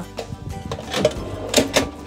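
Slide-out drawer pulled out on metal runners, with sharp clicks and clatter about a second in and twice more near the end. Background music plays under it.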